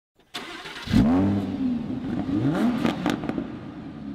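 A car engine revving: a loud rev about a second in, a second rev about halfway through, then the engine sound fades away.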